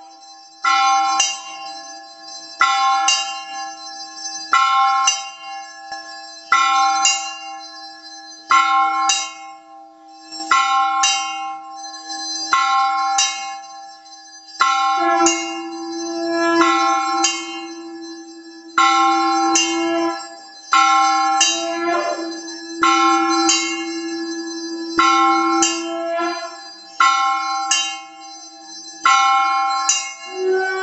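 Temple bell ringing during the lamp offering (aarti), struck in pairs of strokes about every two seconds, each stroke ringing on. A steady low tone sounds beneath the bell from about halfway through until near the end.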